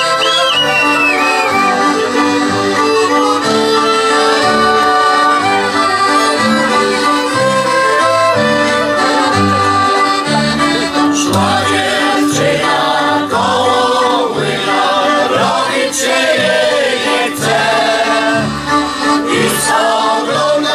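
Polish folk band playing a tune on accordion, fiddles, clarinet, trumpet and double bass, the bass marking the beat under held melody notes. About halfway through, voices start singing along.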